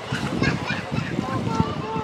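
Wind rumbling irregularly on the microphone over faint, distant chatter of a crowd of bathers.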